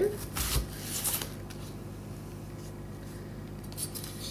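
Chef's knife cutting through a peeled onion and striking a wooden cutting board: one solid knock about half a second in and a couple of lighter cuts about a second in. Then only a faint steady room hum, with a small click near the end.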